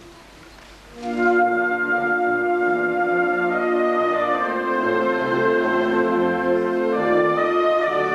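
Wind band (harmonie orchestra) starting a slow instrumental intro about a second in after a brief hush: clarinets, flutes and brass holding sustained chords, which change twice.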